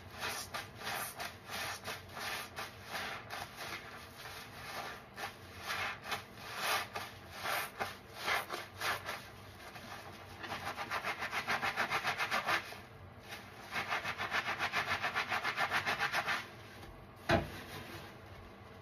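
Soapy kitchen sponges squeezed and rubbed together by hand in a tub of dish-soap suds: wet squelching strokes, with two runs of quick, even scrubbing at about six strokes a second in the second half. One short, louder sharp sound comes near the end.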